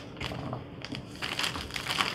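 Plastic zip-top bag crinkling and crackling irregularly as it is held open and handled, with cubes of raw butternut squash going into it.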